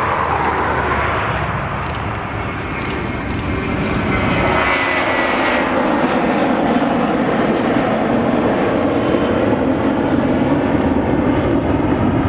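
Airbus A320's twin jet engines at takeoff thrust as the airliner rolls, lifts off and climbs away: a loud, steady sound, with a high whine that fades about five seconds in.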